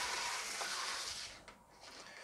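A plastic LEGO baseplate with a seesaw on it is slid across a desktop, making a rubbing scrape that lasts about a second and a half and then dies away.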